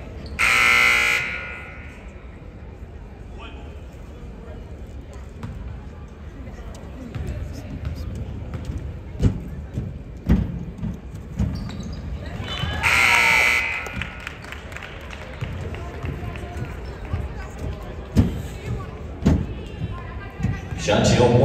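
Scoreboard buzzer sounding twice in short blasts, the first about half a second in and the second about thirteen seconds in. Between and after them a basketball bounces on the court several times, about one bounce a second.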